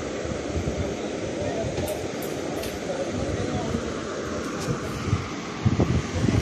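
Steady rumbling background noise with faint voices talking in the background, and a few light clicks.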